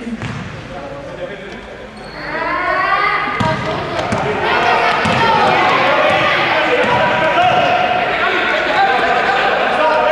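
Sounds of a basketball game in a sports hall: the ball bouncing on the court amid shouting voices of players and spectators. The shouting becomes much louder about two seconds in.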